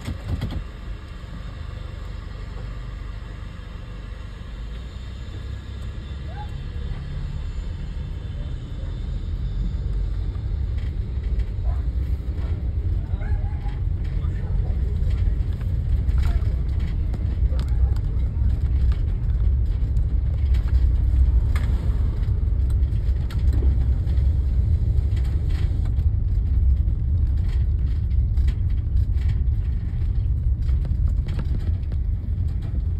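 Low, steady rumble of a car moving along a street, growing louder over the first half.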